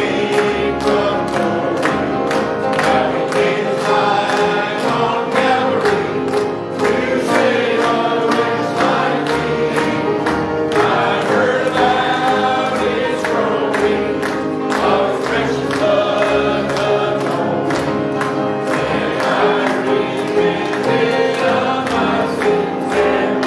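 A church congregation singing a gospel hymn together.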